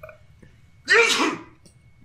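A person sneezing once, about a second in, short and loud.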